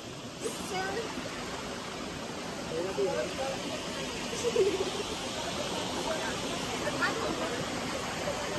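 Steady rushing of flowing river water, with faint voices of people talking a few times.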